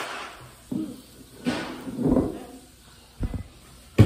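Short non-word vocal sounds: a breathy exhale and a brief hum-like voiced sound about two seconds in. A quick knock follows about three seconds in.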